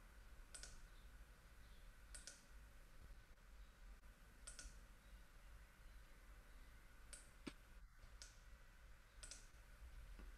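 Near silence with about seven faint, sharp computer mouse clicks, spaced irregularly.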